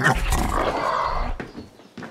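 A pig grunting loudly, one rough, noisy grunt about a second and a half long.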